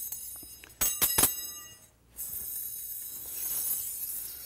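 Metal magician's linking rings clinking against each other: a quick cluster of sharp chinks about a second in, with a bright, high metallic ring lingering after them.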